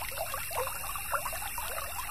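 A small stream babbling and trickling steadily, a dense, irregular patter of quick bubbling notes.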